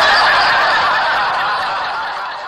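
Laughter with no clear pitch, like a crowd laughing or a canned laugh track, that slowly fades away.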